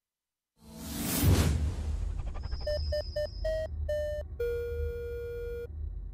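Logo-sting sound effects: after a moment of silence, a whoosh, then five short electronic beeps and one longer, lower beep held for over a second, over a low rumble.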